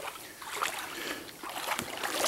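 Kayak paddle strokes in the creek water: irregular splashes and drips that grow louder as paddling gets under way.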